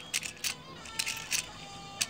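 A few light clicks of hard plastic toy parts being handled, over faint background music.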